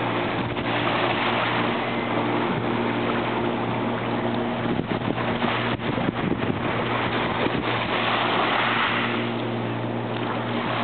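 Steady rushing noise of wind and water on the microphone at the river's edge, with a steady low hum underneath.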